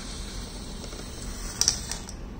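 A small object slid by hand across a hardboard board, with a brief clatter of sharp clicks about one and a half seconds in.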